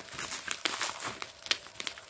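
Plastic bubble wrap crinkling and crackling in irregular bursts as hands pull it apart, with one sharper crack about one and a half seconds in.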